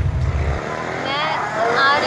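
A low rumble cuts off about half a second in. After it comes steady street traffic noise, with a woman's voice starting about a second in.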